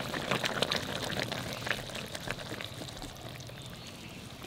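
Hot thin fish curry bubbling and crackling in an iron kadai as the pan is lifted and tipped toward a steel bowl for pouring. The crackling dies down toward the end.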